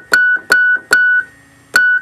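A Wurlitzer 200 electric piano's treble note, a hammer striking a reed, played four times in quick short notes: three close together, then one more after a pause. The note is being judged for a weak treble end caused by where the hammer strikes the reed, and this one is not too bad.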